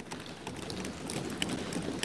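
Many members of parliament thumping their desks in approval: a dense, even patter of knocks.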